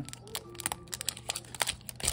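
Foil wrapper of a Pokémon trading card booster pack crinkling in irregular light clicks as the cards are slid out of the torn-open pack.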